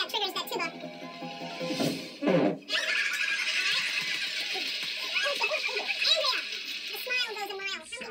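A television game show's soundtrack heard through the TV speaker in a small room: music and voices, with a sweeping sound effect about two seconds in, then a busier, noisier stretch.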